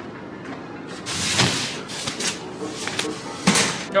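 Cardboard flat-pack boxes being handled: a sliding scrape about a second in, a few light knocks, then a loud thump near the end.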